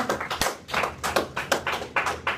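A quick, irregular run of sharp hand claps and taps, a few to the second, with a dull low thump about half a second in.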